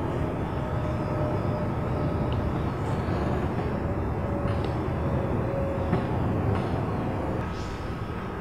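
Steady background noise: a low rumble and hiss with a faint, slightly wavering hum, unchanging throughout.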